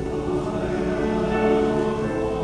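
Men's choir singing in harmony, holding long chords.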